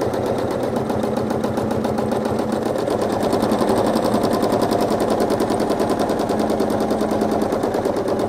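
Sewing machine running steadily at high speed while free-motion quilting, the needle stitching through the quilt layers in a rapid, even rattle.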